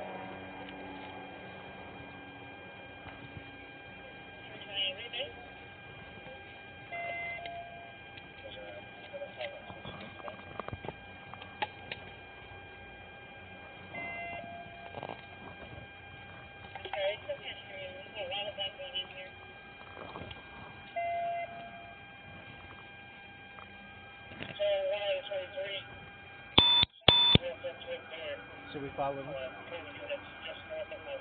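A steady electronic hum under faint, distant voices, with a short beep repeating about every seven seconds. Near the end come two much louder electronic tones in quick succession.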